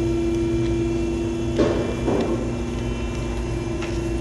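A steady machine hum, one constant tone over a low rumble, with a brief paper rustle of a catalog page being turned about a second and a half in.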